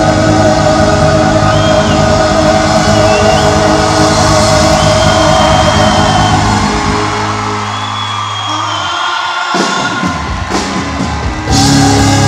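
Live band playing a slow Christian song with held chords; the bass drops out about seven seconds in, leaving thinner music with crowd shouts and cheers, and the full band comes back in suddenly near the end.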